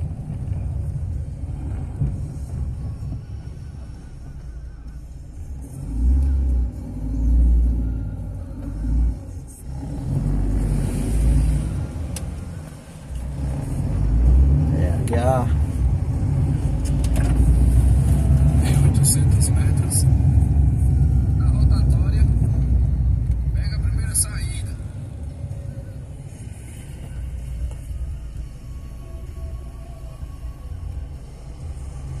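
Car road noise heard from inside the moving car: a low engine-and-tyre rumble that swells and fades, loudest through the middle stretch. A brief wavering tone sounds about halfway through.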